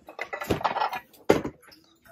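Syracuse China restaurant plates clinking together as the top plate is lifted off a stack, with two sharp knocks, the second the louder.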